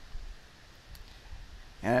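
Computer mouse clicking faintly a couple of times.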